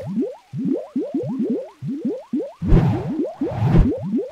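Logo-animation sound effect: a quick run of short, rising, bubbly pops, several a second, with a louder splashy burst of noise under them in the last second or so.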